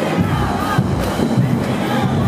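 Marching band music with heavy low brass and drums, mixed with a crowd shouting and cheering.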